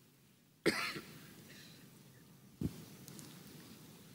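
A man coughing twice into his hand, about a second apart at the start and again past the middle, each cough trailing off in the reverberation of a large hall.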